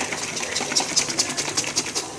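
Milk being shaken hard inside a capped Nutella jar: a fast rhythmic sloshing and slapping of liquid, about ten strokes a second.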